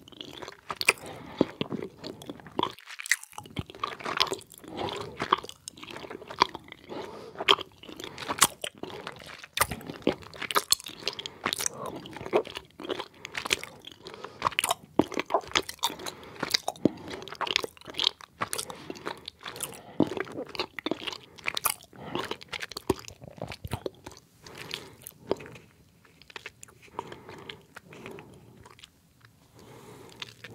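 Close-miked chewing of soft gummy candies: wet mouth sounds with many sharp smacks and squelches, a brief pause about three seconds in, thinning out and getting quieter near the end.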